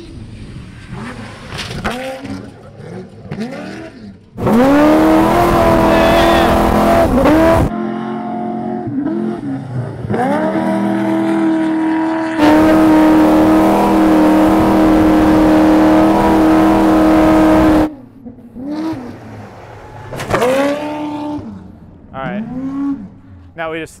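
Off-road trophy truck engine revving up and down over and over as it is driven hard round a dirt course. It holds two long stretches of loud, steady high revs, and the sound changes abruptly between them.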